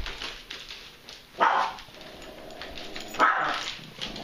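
A dog barking twice, two short barks about two seconds apart, with faint rustling between them.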